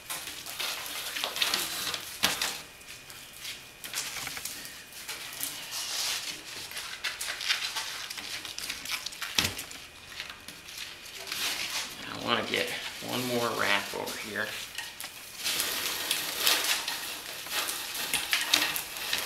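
Danish paper cord being pulled through the woven seat: a dry rasping rustle that swells and fades in repeated long pulls, with a single light knock about halfway through.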